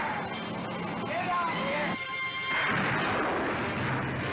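Film soundtrack of a blazing oil well: a loud, dense rushing fire noise with explosive character, mixed with music and voices, dipping briefly about halfway through.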